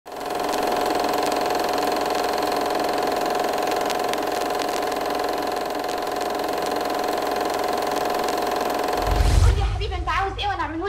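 Old film projector running: a steady mechanical whirr with a hum and scattered clicks. About nine seconds in, a deep low boom, and a voice starts right at the end.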